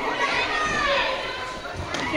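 A crowd of young children shouting and chattering all at once, many high voices overlapping.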